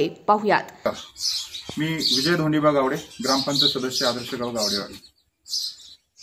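Men's voices talking, with birds chirping in short high calls over and between them.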